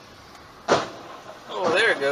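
One sharp bang of two cars colliding in an intersection, heard from inside another car, followed by a person's drawn-out exclamation sliding up and down in pitch.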